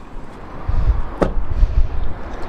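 A car's rear door being swung shut: a single knock a little over a second in, over a low rumble of wind and handling noise on the microphone.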